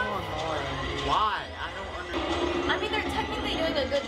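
Action-film soundtrack: alien pirates yelling over the low rumble of a moving vehicle, with thermal detonators beeping.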